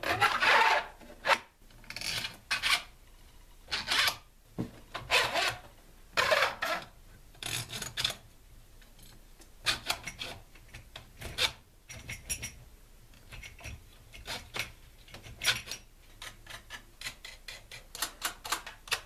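Steel all-thread rods being pushed through the holes of a stack of blue plastic-cased LiFePO4 cells, making irregular rasping scrapes as the threads rub. Near the end come many quick light metal clicks.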